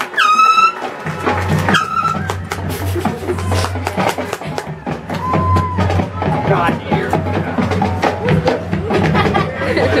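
Marching band playing: held brass notes, one at the start and one about five seconds in, over scattered percussion hits, with crowd chatter close to the microphone.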